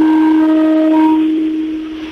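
A single long, horn-like tone held at one steady pitch, with fainter higher overtones in its first second, slowly fading in the second half.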